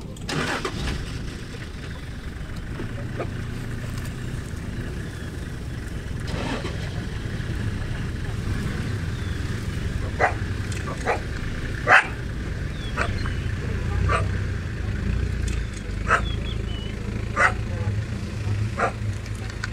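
Cheetahs giving short, sharp snarls and spits at a black-backed jackal near their kill: about eight quick calls from about ten seconds in, the loudest near the middle of the run. A vehicle engine idles low and steady underneath.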